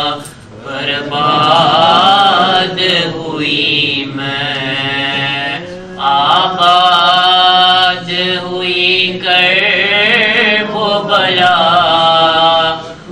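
A man's solo voice reciting a noha (Urdu mourning lament) into a microphone, unaccompanied, in long drawn-out sung phrases with short breaths between them.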